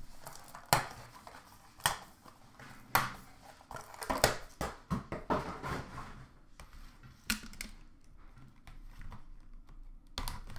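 Hands handling cardboard hockey card boxes in a plastic bin: a few sharp clicks and knocks, with a busier stretch of rustling and knocking in the middle.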